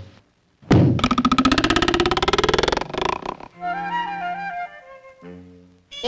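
Cartoon vibration sound effect: a rapid buzzing rattle, about two seconds long and falling in pitch. It gives way to a soft flute melody.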